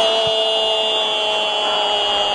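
Arabic football commentator's long, drawn-out goal shout of the scorer's name 'Kroos', held on one steady note and sinking slightly in pitch, over crowd noise.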